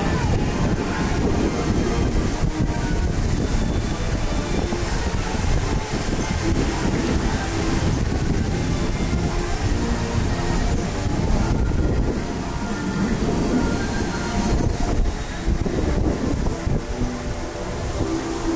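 Rumbling wind noise on the microphone as a Dumbo the Flying Elephant ride vehicle circles through the air, with the ride's music faintly underneath.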